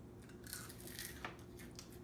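Faint, crisp crunching of a salted edible grasshopper being chewed, a few crunches spaced out through the moment; it is too crunchy to eat comfortably.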